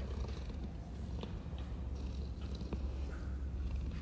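A dog's low, steady rumbling breath as its head is rubbed, with a couple of faint clicks.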